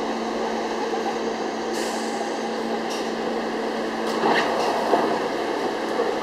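R68 subway train coming to a stop at a station platform, with a steady hum of the cars' equipment. There are short hisses about two and three seconds in, then a few sharper door sounds around four seconds in as the doors open.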